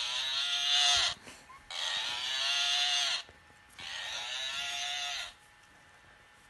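A plush toy cow's built-in sound module playing a moo three times, each about a second and a half long, thin and buzzy with a hissy rasp through its small speaker, sounding sick.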